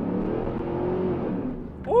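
A 2002 Chevrolet Camaro SS's LS1 V8 under hard acceleration, heard from inside the cabin, its note climbing with the revs and then falling away near the end. A man's loud 'woo' comes right at the close.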